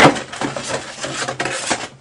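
A bottle set down on a tabletop with a knock, then rustling and small knocks as the next bottle is handled out of a cardboard box.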